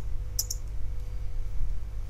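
A couple of computer keyboard keystrokes, close together about half a second in, over a steady low hum.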